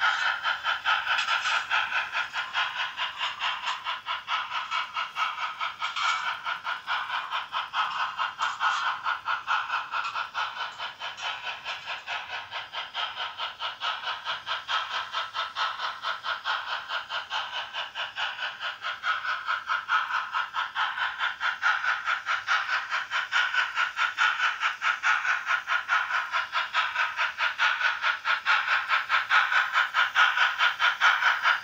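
Märklin HO BR 74 model steam locomotive's sound decoder playing rapid, even steam chuffs with hiss while the engine runs, thin in tone as from a small built-in speaker. It grows a little louder near the end as the locomotive comes closer.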